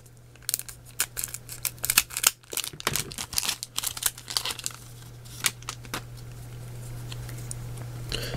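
Foil booster-pack wrapper crinkling and crackling in the hands as the opened pack is handled and the cards are slid out, a run of sharp crackles that thins out in the last couple of seconds. A steady low hum runs underneath.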